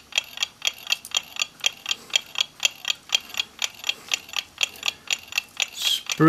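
A clock ticking steadily at a quick, even pace of about five ticks a second.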